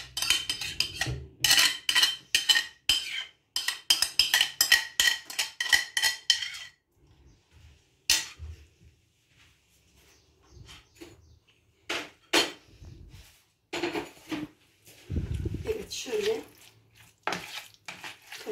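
Metal cutlery scraping and tapping rapidly against a bowl as yogurt is scraped out of it, many quick clicks with a faint ring, for about seven seconds. After a pause, a few scattered clinks and knocks of a fork in the salad bowl near the end.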